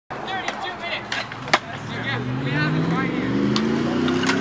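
Skateboard wheels rolling over smooth concrete, a steady hum that rises in pitch from about halfway through as the board picks up speed. Before that come a few sharp clacks, the loudest about a second and a half in.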